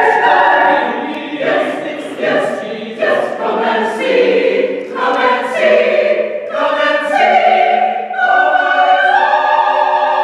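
Mixed choir of men and women singing together, settling into a long held chord about eight seconds in.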